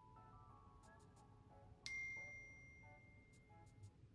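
Faint background music with a single bell-like chime about two seconds in that rings on and fades.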